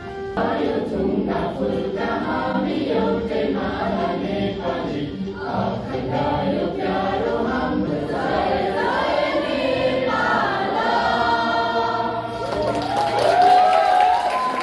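A group of voices singing a slow song together, holding long notes, in a hall with some echo.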